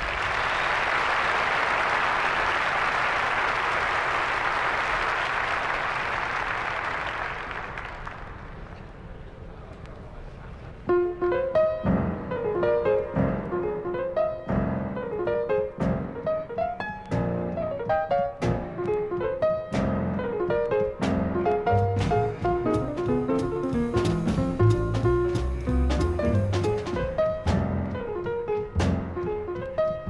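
Audience applause fading away over the first several seconds. After a short lull, a jazz piano trio starts playing about eleven seconds in: acoustic grand piano with upright double bass and drum kit with cymbals.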